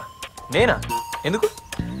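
Film background score under a man and woman's dialogue: a thin, steady high tone is held twice, for about half a second each time.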